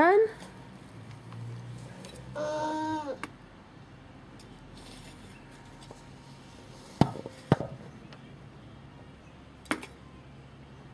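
A small spade knocking against a flower pot while scooping soil: two sharp knocks about half a second apart, then one more near the end.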